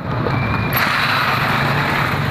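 Road traffic noise: a steady hiss that grows louder about three-quarters of a second in.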